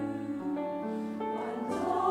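Church choir singing a slow hymn in Korean, holding chords that change every half second or so and grow louder near the end.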